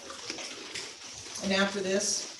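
Liquid poured into a communion cup, a soft splashing trickle, followed near the end by a woman's voice beginning to speak.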